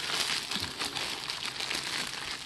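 Clear plastic bag crinkling and crackling as fingers pick at and pull it open, a continuous run of small crackles.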